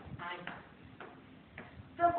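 Footsteps coming down hard tiled stairs, about four steps in two seconds at an even pace, with a short bit of voice near the start.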